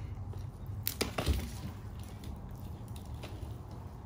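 Hand pruning shears cutting through the rot-damaged stem of a dragon fruit cactus: a couple of sharp cracks about a second in, then quieter handling noise.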